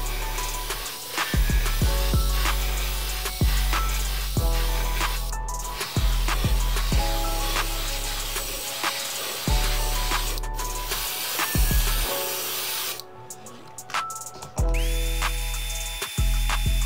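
Background music with a slow, repeating bass line. Beneath it, an airbrush hisses steadily as it sprays paint through a comb stencil, stopping about thirteen seconds in.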